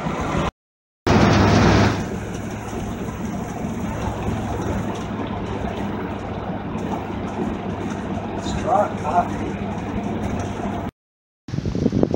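Steady road and engine drone inside the cab of a Class A motorhome at highway speed, with a low hum underneath. The sound drops out twice, briefly near the start and again near the end, and is louder for about a second after the first dropout.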